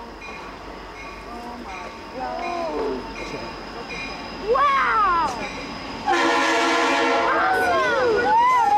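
Diesel locomotive air horn sounding as the train leaves the tunnel: a loud, steady chord that starts suddenly about six seconds in and holds. Before it come a few short sliding rising-and-falling tones.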